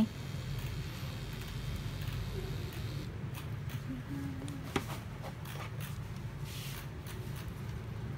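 Light handling sounds of a plastic microneedling-pen needle cartridge being picked up: a few faint clicks and rustles, with one sharper click near the middle, over a steady low hum.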